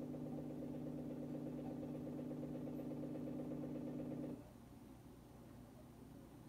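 A steady low hum of several tones with a faint regular pulse, which cuts off suddenly about four and a half seconds in and leaves only faint hiss.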